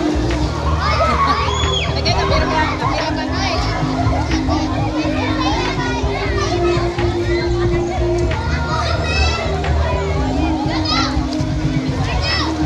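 Many children's voices at once, shouting and chattering as they play in a swimming pool, with music of long held notes playing underneath.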